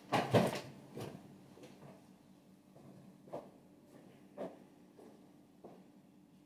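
A person getting up from a wooden chair at a table, a short loud bump and shuffle at the start, followed by a few faint, scattered knocks as he moves about the room. A faint steady hum runs underneath.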